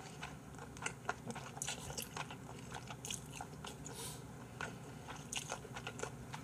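Close-miked eating of naengmyeon cold noodles: quiet wet chewing with many small mouth clicks, and a few short slurps as the noodles are drawn in.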